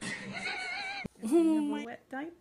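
A baby's high-pitched, wavering cry, which cuts off abruptly about a second in. It is followed by a louder, drawn-out voice.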